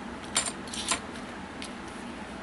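Small metal wall anchors and screws clinking against each other and the workbench as they are handled: two light clicks about half a second apart, then a fainter one.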